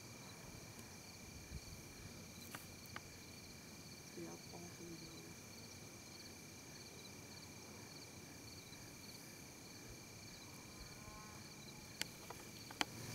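Faint, steady chorus of crickets and other insects, one of them chirping in a quick, even pulse. A few light clicks and a brief faint voice-like sound come about three to four seconds in.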